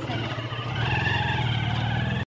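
A steady low engine hum, like a vehicle idling.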